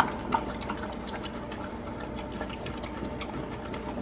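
Golden retriever puppy eating soft, wet homemade dog food from a stainless steel bowl: irregular wet chewing and smacking with many small clicks, two louder clicks near the start.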